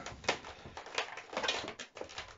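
Latex modelling balloons being handled and twisted together, giving a few short, irregular rubbing and creaking sounds.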